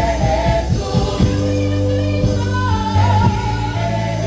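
Live gospel singing by a group of women on microphones, backed by a band with bass and drums.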